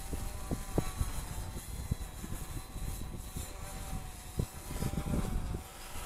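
Wind buffeting the microphone: a low rumble broken by irregular gusty thumps, with a faint steady whine underneath.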